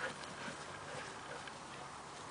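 Faint, soft footfalls of a dog running across a grass lawn.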